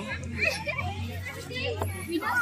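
Children's voices at play, short calls and chatter, over a steady low hum.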